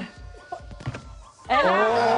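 A hand slapping down on a boiled egg in an egg cup: a couple of dull thunks about half a second and a second in, with no crack, because the egg is boiled rather than raw. A voice comes back about a second and a half in, over faint background music.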